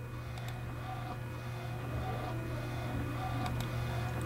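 Steady low hum of room noise with a few faint clicks, about half a second in and again near the end: a computer mouse being clicked while selecting and grouping objects.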